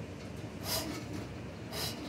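Motor-driven drain-cleaning machine running steadily with its cable spinning in the drain line, with a short hiss about once a second.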